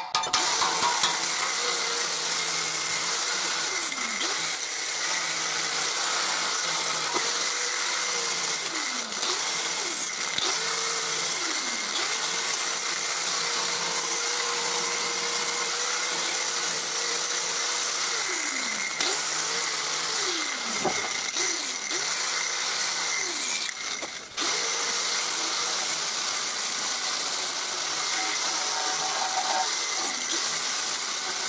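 Corded angle grinder with an abrasive disc grinding rust off the steel rear axle of a Volkswagen Polo. Its steady whine sags in pitch each time the disc is pressed into the metal and then recovers. The sound drops briefly about four-fifths through before the grinding resumes.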